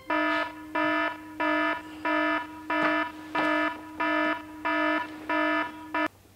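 Mobile phone alarm going off: a buzzy pitched beep repeating about one and a half times a second, about ten beeps, stopping abruptly near the end as it is switched off.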